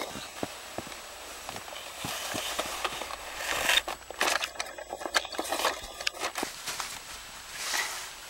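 Snow crunching and scraping as a toy bulldozer's plastic blade is pushed through it, with irregular crackles and clicks and denser crunching stretches in the middle.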